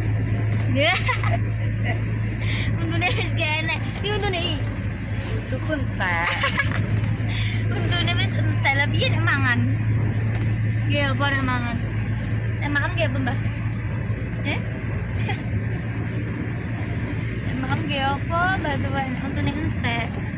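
Steady low drone of a car running on the road, heard from inside the cabin, with voices talking now and then over it.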